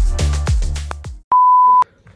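Electronic background music with deep bass drum hits, which stops about a second in. It is followed by a single loud, steady beep lasting about half a second.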